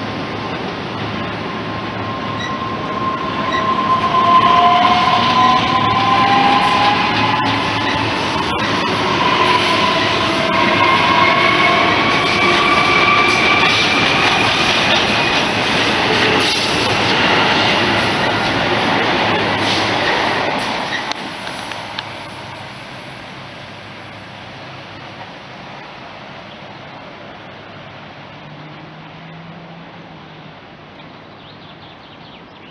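ES2G Lastochka electric train accelerating past close by, its traction motors giving a whine of several tones that climb steadily in pitch over wheel noise on the rails. The sound drops away about two-thirds of the way through as the train draws off into the distance.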